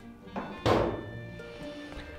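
A single heavy thunk about two-thirds of a second in, as a dropped long-handled mop hits the floor, with a short ringing tail. Background music with held notes plays throughout.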